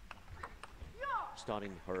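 A table tennis ball being knocked back and forth in a rally: a few light clicks of ball on bat and table. A man's voice cuts in about a second in.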